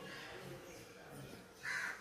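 A crow cawing once, loud and short, near the end, over faint low voices.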